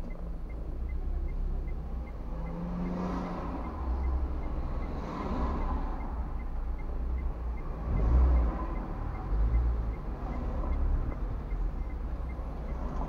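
Low rumble of traffic and the car's own engine heard from inside the cabin while waiting in slow town traffic, swelling in loudness a few times as vehicles move nearby.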